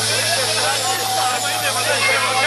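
Many voices of a crowd talking and calling at once, loud and close, over a steady low hum.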